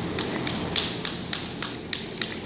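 A run of light, sharp taps, about three or four a second, over a steady low hum.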